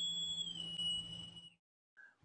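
An edited-in sound effect under a title card: one high, steady tone with a faint low hum beneath it. It lifts slightly in pitch and settles back, then cuts off about one and a half seconds in.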